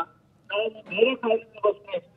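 A man's voice over a telephone line, narrow and thin, speaking in short phrases after a half-second pause.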